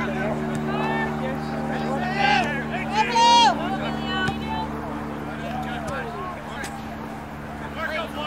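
Outdoor shouting and calling from players and spectators at a youth soccer game, the loudest call about three seconds in, over a steady low hum.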